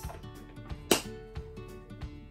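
Background music with steady tones, and one sharp click about a second in as the two halves of a plastic bath bomb mold are worked together in the hands.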